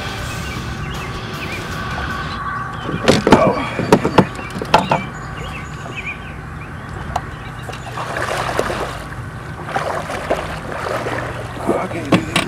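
A big hooked blue catfish thrashing and splashing at the surface beside a boat, in several bursts of sharp splashes, over a steady hum.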